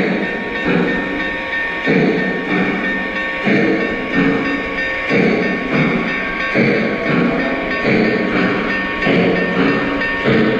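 Model steam locomotive running on an O-gauge layout, its sound system chuffing in a steady rhythm of about one beat every 0.7 seconds, with a steady high tone underneath and music playing over it.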